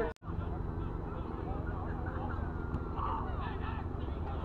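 Open-air sports-field ambience: a steady low wind rumble on the microphone with faint distant calls, briefly cut off at the start by an edit.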